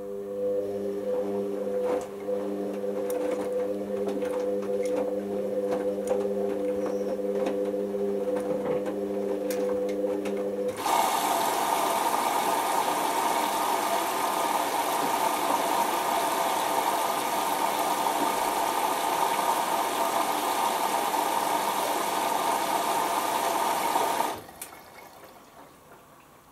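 Hoover Optima washing machine early in its prewash: the drum motor hums steadily while turning the drum, with light knocks of the clothes tumbling. About eleven seconds in, the motor stops and a loud, steady hiss of water rushing in through the inlet valve takes over, cutting off suddenly about two seconds before the end.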